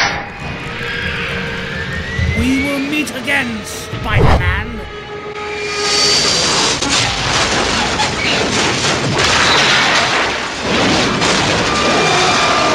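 Action-film sound effects over music: a rising whine and several short hits in the first few seconds, then a loud, steady rushing noise from about halfway on.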